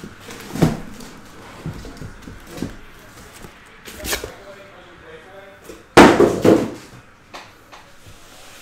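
Cardboard case and sealed card boxes being handled and set down on a table: a few knocks, the loudest a heavy thump about six seconds in.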